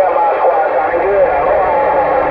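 Long-distance skip signal received on a Uniden Grant XL radio and heard through its speaker: a distant station's voice, faint and garbled in static, with a thin steady whistle under it.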